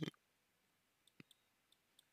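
Near silence in a pause between spoken phrases, with a faint single click about a second in.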